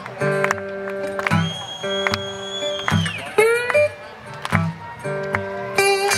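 Metal-bodied resonator guitar played fingerstyle: plucked notes ringing over a repeating bass line, with a few notes sliding in pitch a little past the middle.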